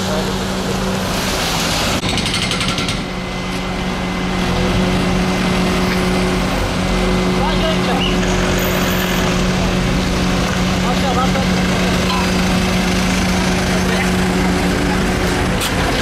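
Street traffic on a wet road: vehicles passing and a van pulling up, over a vehicle engine idling steadily with a constant low hum.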